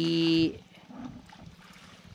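Faint splashing and trickling of water as a bucket is dipped into a shallow irrigation ditch and lifted out, with a small splash about a second in.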